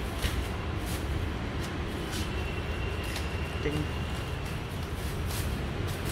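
Scattered light clicks and taps of parts being handled and fitted on a walk-behind tractor's handlebar, over a steady low hum.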